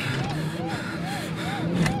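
Emergency-vehicle siren in a fast up-and-down yelp, about three sweeps a second, over the steady hum of the car, heard from inside the cabin.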